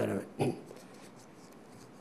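Faint rustle of book pages being handled at a desk near a microphone, after a brief trailing bit of a man's voice in the first half second.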